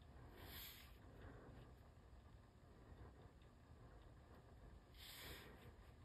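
Near silence: room tone, with two faint, brief soft noises, one about half a second in and one about five seconds in.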